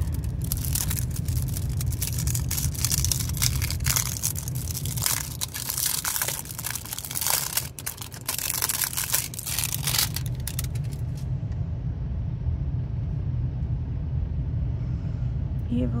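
Plastic wrapping crinkling and tearing as a trading card deck is unwrapped: a dense run of sharp crackles for roughly the first ten seconds, then only soft handling. A steady low rumble runs underneath.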